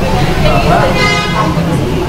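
Street traffic noise: a steady rumble of passing vehicles, with a short car horn toot about a second in.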